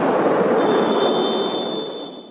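Steady rushing noise of wind and road while riding along a road, with a thin high-pitched tone joining about half a second in; the noise fades toward the end.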